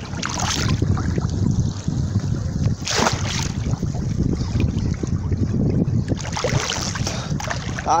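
Water splashing and sloshing right at the microphone as a swimmer moves through river water with the phone held at the surface, over a steady rumble of wind on the microphone. A louder splash comes about three seconds in and another near the end.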